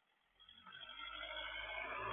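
A vehicle's engine fading in about half a second in and growing steadily louder as it approaches, faint and heard through a security camera's built-in microphone.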